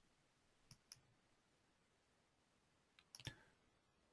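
Near silence, with two pairs of faint computer mouse clicks, one pair just before a second in and the other about three seconds in.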